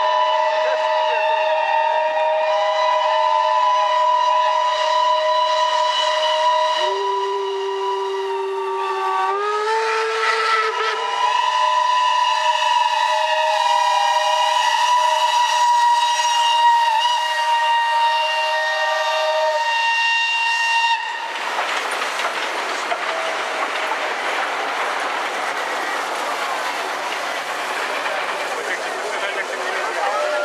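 Several steam locomotive whistles blowing together in a chord of different pitches, held and shifting for about twenty seconds, then cutting off abruptly. An even rushing noise follows for the rest of the time.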